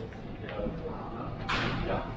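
Busy shop background with faint voices, and one short, sharp swish about one and a half seconds in.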